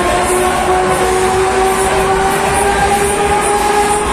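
Break Dance ride spinning at speed: a steady droning whine that rises slowly in pitch, over the rumble of the running ride.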